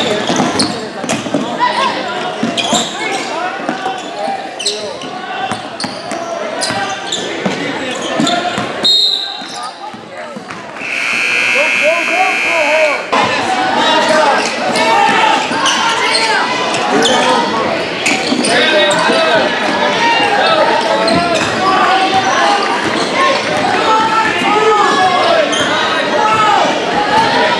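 Basketball game in a school gym: a ball bouncing on the hardwood floor amid players' and spectators' voices. A referee's whistle sounds briefly about nine seconds in, followed by the scoreboard buzzer sounding for about two seconds.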